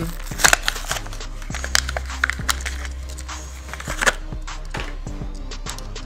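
Blister-packed die-cast toy car being opened by hand: plastic blister and cardboard backing crackling and crinkling in quick sharp clicks, busiest in the first four seconds, over steady background music.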